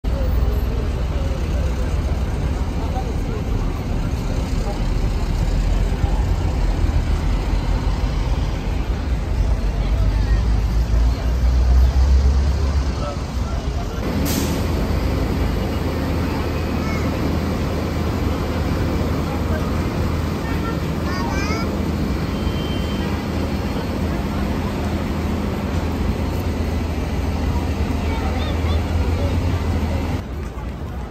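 Busy street ambience: vehicle engines and traffic rumble mixed with the chatter of passing pedestrians. A heavy low rumble in the first half stops abruptly with a sharp click about halfway, after which a steadier engine hum and voices carry on.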